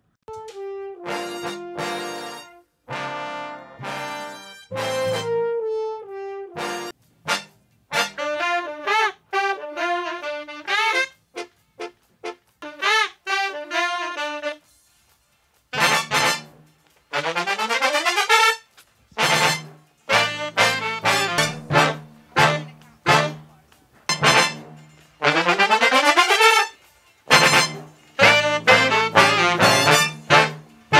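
Isolated brass section (trumpets and trombones) from a multitrack recording playing short horn phrases with gaps between them. From about halfway, the playing gets denser, with low repeated notes and quick upward rips.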